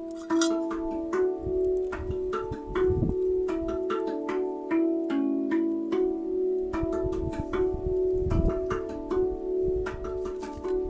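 Background music: a steady run of short struck or plucked notes over held tones, with low rumbles about three seconds in and again in the second half.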